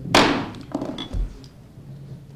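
A sharp, loud knock just after the start with a short ringing tail, then a few fainter knocks and a low thump about a second in, over faint room murmur.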